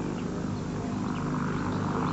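A steady low droning hum with outdoor ambience, with no clear strike or event in it.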